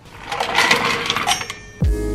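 Ice rattling and clinking in a stainless steel ice bucket as a champagne bottle is drawn out of it. Background music with a beat comes in near the end.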